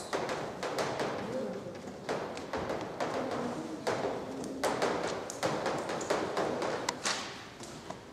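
Chalk tapping and scraping on a blackboard as a row of numbers and multiplication dots is written: many sharp taps in quick, uneven succession that stop shortly before the end.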